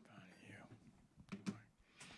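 Faint hushed talk, then two light knocks about one and a half seconds in as a phone is set down on the wooden podium top.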